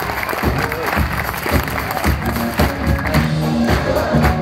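A live band playing in a hall: drum beats and, from about halfway through, steady low bass notes, over audience applause and crowd noise.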